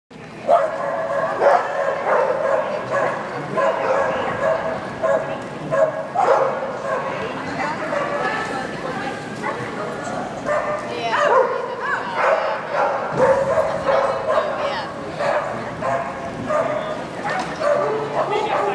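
A dog barking and yipping repeatedly, with people talking in the background.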